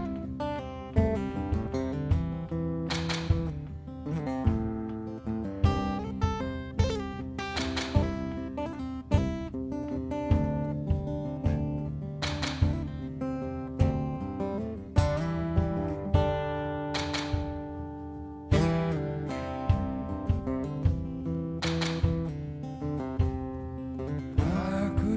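Live band instrumental passage without singing: a steel-string acoustic guitar picked and strummed, with drum and percussion hits about every one to two seconds.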